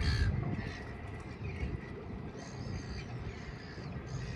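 Birds calling a few times with short, harsh calls, over wind rumbling on the microphone.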